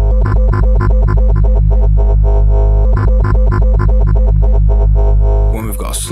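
Low modular-synth oscillator drone, its wavetable timbre pulsing in rapid, even repeats about six times a second. The pulses come from a fast LFO, shaped by a short-decay envelope, that is modulating the wavetable.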